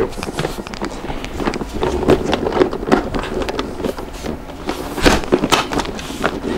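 Plastic and metal clicks, knocks and rustling as a Cybex Aton infant car seat is lowered and fitted onto the lower car-seat adapters of an UPPAbaby Vista stroller, with a louder knock about five seconds in.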